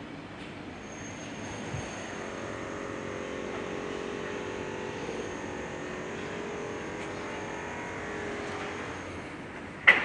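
A distant engine hum in the open air swells gradually for several seconds and then fades away. Just before the end comes a single sharp knock, louder than the hum.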